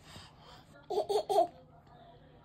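A baby laughing: three quick, high-pitched laughs in a row about a second in.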